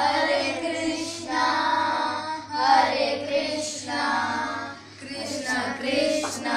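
Children singing a kirtan chant together in short phrases about a second long, with a steady low drone held underneath.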